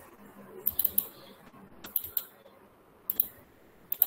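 Computer mouse clicking through a laptop microphone, in closely spaced pairs roughly once a second.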